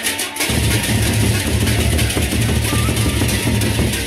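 Sasak gendang beleq ensemble playing, with many pairs of hand cymbals (ceng-ceng) clashing in a dense, continuous wash over deep drumming. The deep drumming drops out briefly at the start and comes back in about half a second in.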